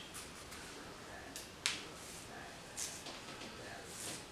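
Scissors snipping through curly hair: a few short, sharp snips, the clearest about a second and a half in and a fainter one near three seconds.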